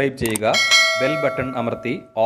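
Notification-bell chime sound effect ringing about half a second in, several steady tones sounding together and ringing on, heard under a man's speaking voice.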